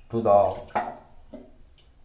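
A man's voice speaking a few words, then faint background noise for the last second.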